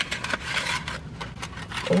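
Paper pie sleeve crinkling and rustling as a fried pie is slid out of it, busiest in the first second or so.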